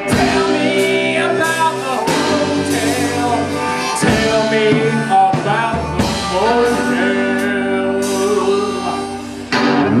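Live band with hollow-body electric guitar, fiddle and harmonica over drums, playing at full volume. It dips briefly near the end, then comes back in with a loud chord.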